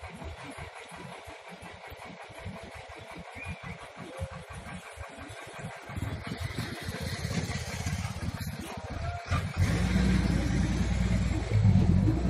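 A vehicle engine, unseen, getting louder from about halfway through and running steadier and loudest near the end, over an irregular low rumble.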